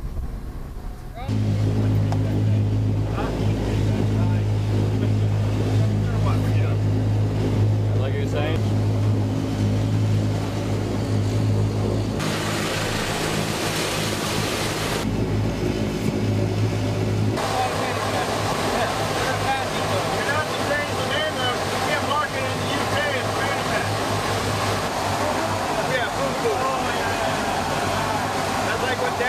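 Steady low drone of a propeller aircraft's engines heard inside the cabin, starting about a second in. A rushing hiss joins for several seconds midway, and voices talk over the drone in the last part.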